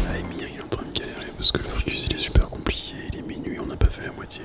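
Hushed, whispered talk with a few sharp clicks and knocks from a camera on a handheld gimbal being handled and adjusted.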